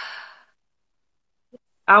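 A woman's short breathy sigh trailing off the end of her words, fading within half a second, then dead silence until she starts speaking again near the end.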